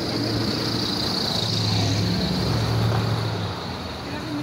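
A motor vehicle's engine running nearby, a low hum that builds toward the middle and falls away shortly before the end, over a steady high-pitched hiss.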